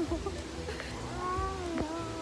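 A baby's short, drawn-out vocal sound with a gliding pitch, starting about a second in.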